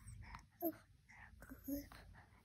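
A baby making two brief, faint vocal sounds, one a little over half a second in and one near the end, in a lull between louder babbling.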